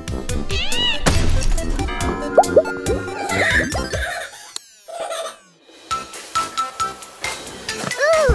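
Playful cartoon background music with comic sound effects: springy boing-like glides near the start and quick popping plops a couple of seconds in. A falling sweep follows, then a short lull before the music picks up again.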